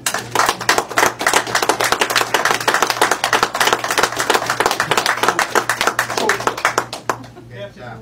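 A small group of people applauding, breaking out suddenly and dying away about seven seconds in.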